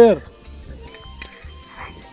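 A man's voice finishing a short greeting at the very start, then faint background music with low hum.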